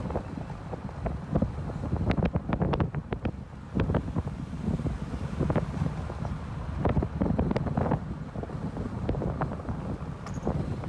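Wind buffeting the microphone of a camera moving along a road, a steady low rumble broken by irregular crackles and pops.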